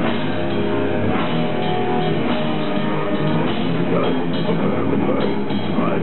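Heavy metal band playing live: electric guitars and a drum kit, loud and dense without a break.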